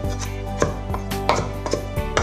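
Santoku knife chopping on a wooden cutting board, about five sharp knocks in two seconds at an uneven pace, over background music.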